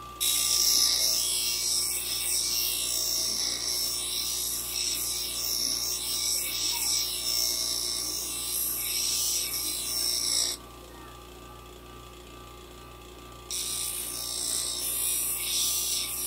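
A small steel carving knife ground against a motor-driven white grinding wheel to sharpen its edge: a steady, loud, high grinding hiss over the hum of the running motor. The blade comes off the wheel about ten seconds in, leaving only the motor hum, and goes back on about three seconds later.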